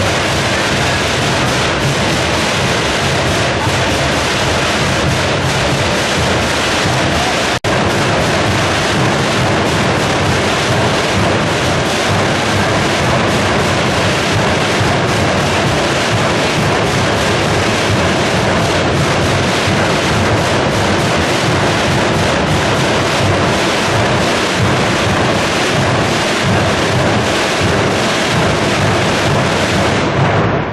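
Massed procession drums and bass drums playing a dense, continuous roll, with a brief dropout about seven and a half seconds in.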